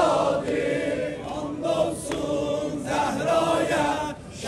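A crowd of men chanting an Azeri mourning elegy (mersiye) together in unison. The sound eases slightly in the middle and swells again near the end.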